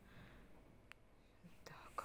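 Near silence: faint room tone with a single soft click a little under a second in.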